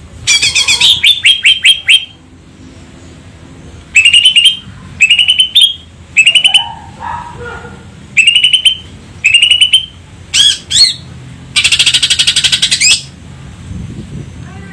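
Cucak ijo (green leafbird) singing loudly in short bursts of rapid, sharp repeated notes, about ten phrases with pauses between them. It ends in a longer rapid trill of about a second and a half near the end.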